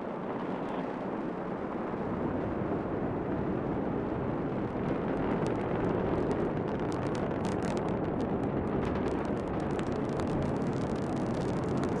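Falcon 9 first stage's nine Merlin engines firing during ascent: a steady deep rumble, with a faint crackle in the middle of the stretch.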